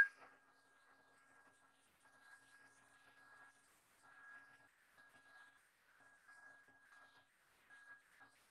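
Near silence with a very faint, steady high whine from a hand-held hair dryer blowing on the paper, its sound turned far down.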